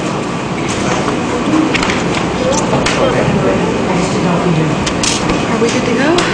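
Indistinct chatter of several people talking at once, with a few light knocks and clicks.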